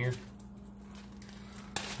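A plastic zip-top bag rustling briefly near the end as it is opened, after a quiet stretch with a faint steady hum underneath.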